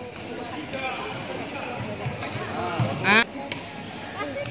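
Badminton rally in an indoor sports hall: a few sharp racket hits on the shuttlecock and court sounds over a background of many voices echoing in the hall. One short, loud, high-pitched squeal comes about three seconds in.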